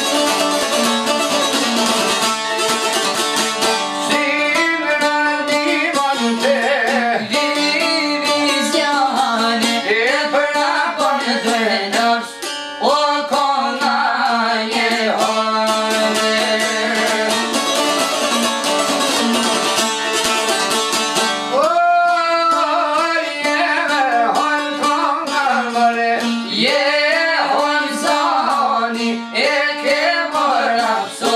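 Two çifteli, Albanian two-stringed long-necked lutes, strummed over a steady drone while a man sings an Albanian folk song, his line bending up and down in pitch. There is a brief dip in the music about twelve seconds in.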